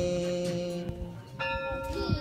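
A large temple bell ringing, its long steady tones ringing on, with a fresh ring starting about one and a half seconds in, over devotional chanting.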